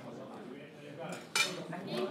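A single sharp clink about a second and a half in, over faint voices.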